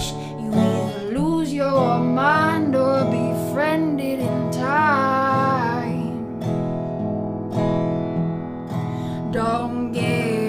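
Wood-bodied resonator guitar strummed steadily while a woman sings a wavering, sliding melody over roughly the first six seconds; after that the guitar carries on mostly alone.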